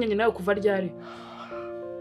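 A voice speaking for the first second, then quiet background music of held notes, with a short breathy exhale about a second in.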